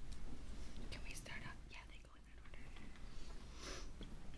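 Quiet whispering, with short breathy hisses of whispered words, over a steady low hum of room tone.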